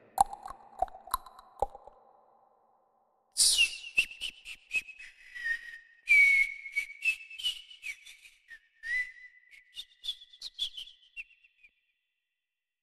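A high whistling tone that holds and steps between a few pitches, with many short clicks scattered through it; a fainter, lower tone with clicks comes before it in the first two seconds.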